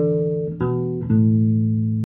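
Bass guitar played solo, a few plucked notes each left to ring: one sounding as it starts, a new note about half a second in, and a lower note about a second in that is cut off abruptly at the end.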